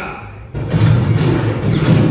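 Theme-park pre-show soundtrack played over the room's speakers: loud music with a heavy low end that comes in suddenly about half a second in.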